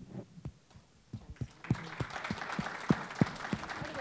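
Audience applauding: a few scattered claps at first, thickening into steady clapping about a second and a half in.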